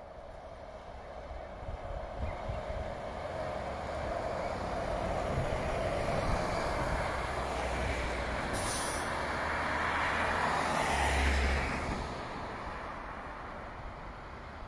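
City transit bus approaching and passing close by, its engine and tyre noise growing steadily louder, then falling away about twelve seconds in. There is a brief hiss about two-thirds of the way through and a short deep rumble as it goes by.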